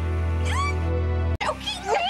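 A woman's high, strangled cries that rise and fall while she is throttled, over a steady low music bed. The sound drops out abruptly for an instant about halfway through, then the cries resume.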